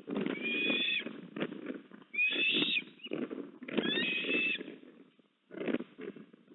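Eastern ospreys calling at the nest: three high whistled calls, each under a second long, coming about every second and a half, over a low rumbling noise.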